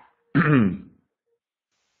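A man clearing his throat once, a short voiced "ahem" lasting about half a second.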